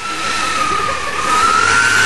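School bus engine running with a loud, steady high whistle over the engine noise, the pitch creeping up and easing back near the end. The whistle came on as the bus's exhaust pipe was torn off.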